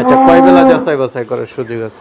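Holstein Friesian cow mooing, one steady call that ends about three-quarters of a second in.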